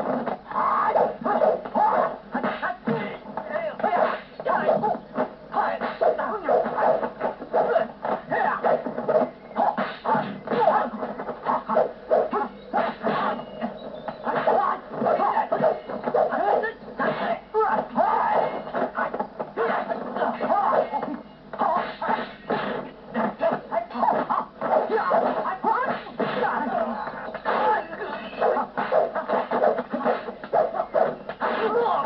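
Fight-scene soundtrack: voices and music mixed with many short, sharp hits, without a break.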